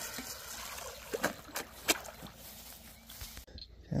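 Water trickling and sloshing, with a few sharp clicks or knocks between one and two seconds in.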